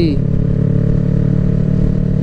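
Yamaha YZF-R3 parallel-twin motorcycle engine running at a steady cruising note with a loud exhaust, with wind rumble on the microphone.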